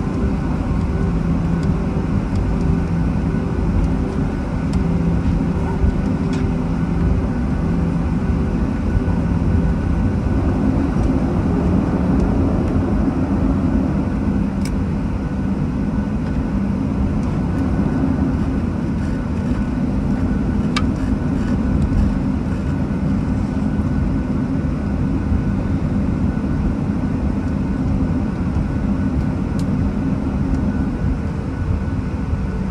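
Jet airliner cabin noise during taxi, heard from inside the cabin: the engines at idle give a steady low rumble with a hum of several steady tones, and the hum shifts about ten to eleven seconds in.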